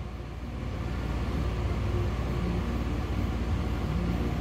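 Dodge Dart driving at about 35 km/h, heard from inside the car: steady engine and road noise, growing a little louder as it gathers speed.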